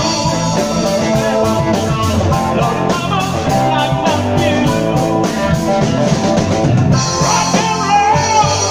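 Live rock band playing a driving rock and roll number: electric guitars, bass, keyboards and drum kit, picked up by a smartphone microphone in a bar room.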